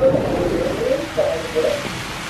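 Heavy rain pouring down, heard as a steady hiss that comes in suddenly as the door is opened.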